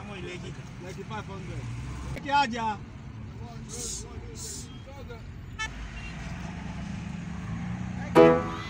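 Steady low rumble of a car on the move, heard from inside the cabin, with faint voices now and then and two short hisses about four seconds in.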